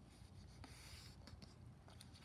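Faint rubbing of paper as hands press and smooth the crease of a sheet folded in half.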